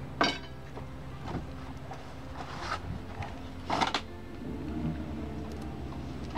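Knocks and scuffs of a man climbing aboard and settling into the seat of a small Twin Troller X10 boat, three short bursts, the loudest about four seconds in, over a steady low hum.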